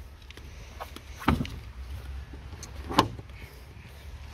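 Two short clunks about a second and a half apart, from a Kia EV6's plastic frunk tray and its packed contents being handled and lifted, over a low steady rumble.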